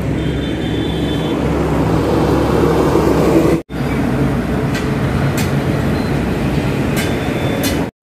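Road traffic: the engines and tyres of passing vehicles, including a lorry and motorcycles, make a steady rumble. The rumble drops out for a moment about halfway, then resumes with a few short clicks near the end.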